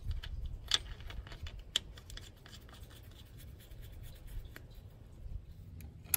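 Fingers scratching and rubbing on the tractor's painted metal housing beside the oil drain hole, with a scatter of small sharp clicks, the two loudest under a second in and just under two seconds in.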